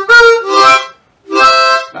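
Diatonic blues harmonica played with cupped hands: two short loud phrases with a brief gap between, moving from the three-hole blow to the three-hole draw bent a half step and up to the four-hole blow.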